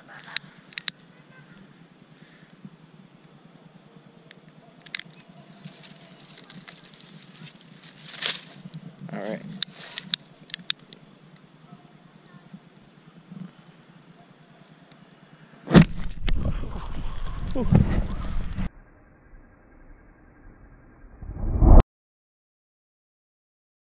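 Scattered clicks and light rustles from a pile of dry corn stalks being poked, then a loud rushing noise for about three seconds. Just before the end comes a sudden loud whoosh as fuel poured on the pile ignites into a fireball.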